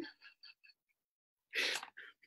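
A man's breathy burst of laughter, one short exhaled snort about a second and a half in, with near silence before it.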